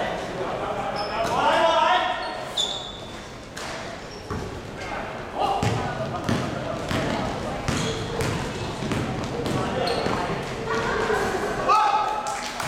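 A basketball being dribbled, its bounces echoing in a large gym, with a few short high sneaker squeaks and players' voices calling out.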